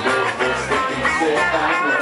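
Live band playing a reggae song, with electric guitar over bass and drums.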